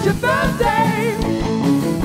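Live rock band playing: a woman singing lead over electric guitar and a drum kit.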